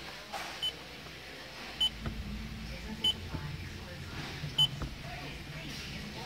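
Factory sat nav touchscreen beeping as its buttons are pressed: four short, high beeps spread over several seconds, over a low hum.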